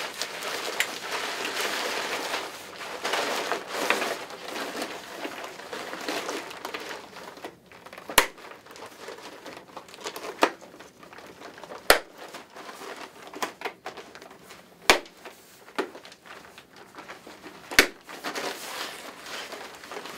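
Tychem hood fabric crinkling and rustling as it is handled, heaviest in the first few seconds. Four sharp clicks follow in the second half, spaced about three seconds apart: the suspension's four buttons snapping into the buttons on the hood's lens.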